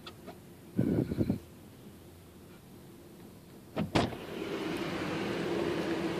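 A few dull knocks, then a sharp click, after which a car's small electric motor switches on and runs with a steady whirring hum.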